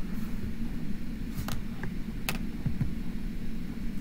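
Steady low hum of background noise picked up by a computer microphone, with two sharp mouse clicks about a second and a half and two seconds in.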